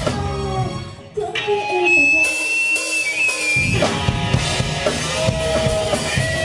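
Live rock band with drums, bass, electric guitar and keyboard playing a break in a song: the full band drops out, a few notes ring and fade, a single high note is held through the gap, and the drums and guitars come back in a little before four seconds in.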